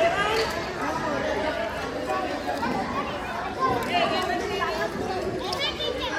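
Chatter of many children's voices talking at once, no single voice clear.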